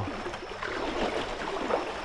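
Seawater sloshing and splashing around a person's legs as he wades through it about crotch deep, an irregular run of small splashes.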